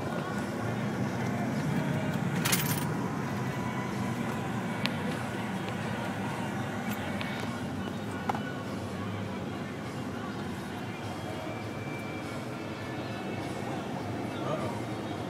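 Truck engine and tyres heard from inside the cab while driving over desert sand, a steady low rumble. A loud brief rattle about two and a half seconds in and a couple of sharp knocks later, as loose things in the cab rattle.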